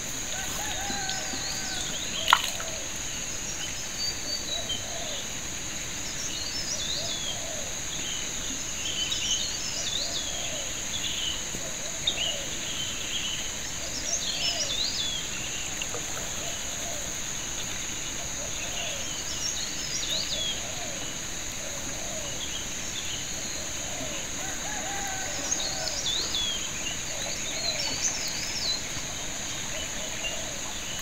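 A steady high insect drone with birds calling in short, repeated chirping phrases every few seconds, and one sharp click a couple of seconds in.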